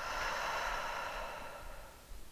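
A woman's long audible exhale that follows a cued deep inhale, fading away over nearly two seconds.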